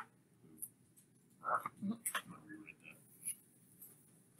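Faint, indistinct student voices murmuring an answer to a question, with a few soft clicks.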